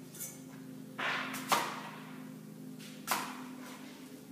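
Kitchen knife cutting through an apple onto a cutting board: a short cut about a second in ends in a sharp knock, and a second knock follows about three seconds in.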